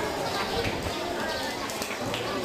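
Background chatter of an audience of children and adults, many voices talking at once, with a few light knocks from a small child's shoes stepping across the stage floor.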